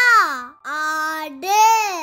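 A child's voice reciting Tamil in long, sing-song syllables. A held vowel ends about half a second in, then two more drawn-out syllables follow.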